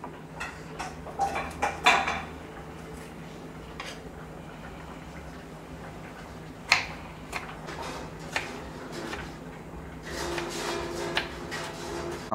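Kitchen knife cutting a tomato on a wooden chopping board. There are a few knocks of the blade on the board early on, a single sharp knock about seven seconds in, and a quick run of chopping strokes near the end as the tomato is diced.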